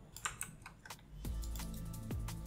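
Computer keyboard keys clicking in a quick run as a command is typed, with background electronic music and its steady beat coming in about a second in.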